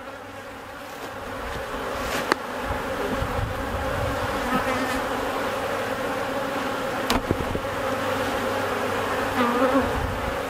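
Honeybee colony in an open hive buzzing steadily. The buzz builds over the first few seconds and then holds. It is the sound of a strong colony growing agitated at being disturbed. Two light knocks are heard, one a couple of seconds in and one about seven seconds in.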